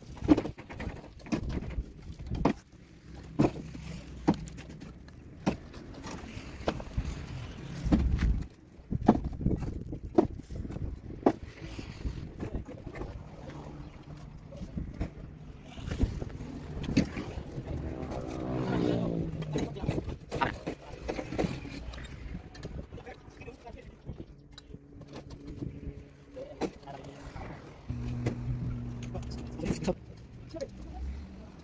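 Mason's trowel knocking and scraping on bricks and mortar in irregular sharp taps, with voices and a running motor vehicle in the background.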